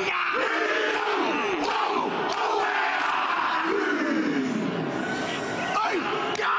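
Men shouting a Māori haka in unison, with long drawn-out falling calls, over the noise of a large stadium crowd.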